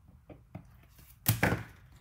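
Desk-top handling noises: a few faint ticks, then a single sharp knock about 1.3 s in. This comes as a needle-tip liquid glue bottle refuses to flow.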